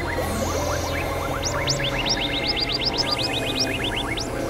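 Experimental electronic synthesizer music: a low drone that drops out a little over a second in, under a flurry of short rising chirps that come several a second and climb higher and thicker through the second half.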